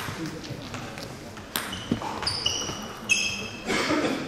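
Table tennis ball clicking off bats and the table in a serve and rally, with a few short high squeaks of sports shoes on the hall floor.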